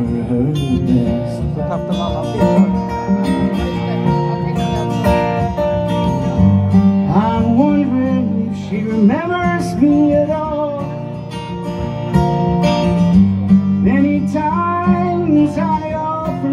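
Two acoustic guitars strumming and picking a slow folk song together in an instrumental passage between verses, with a melody line bending over the chords.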